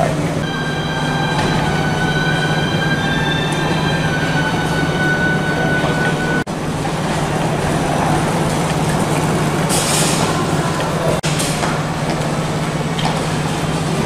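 Terminal hall ambience: a steady low hum under a constant rumble of movement, with a high whine of several steady tones over the first six seconds. The sound drops out briefly about six and a half and eleven seconds in, and a short hiss rises near ten seconds.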